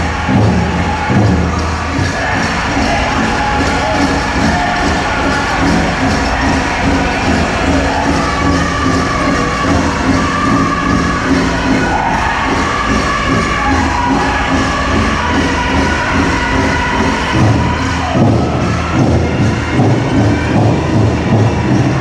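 A powwow drum group playing a grass dance song: a big drum struck in a steady beat by several drummers while the singers sing together in high voices.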